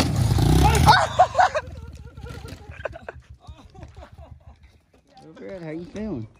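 Pit bike engine running loudly under throttle as it hits a jump ramp, with people shouting over it. About a second in, the engine sound stops abruptly, leaving faint voices and a few scattered clicks and knocks.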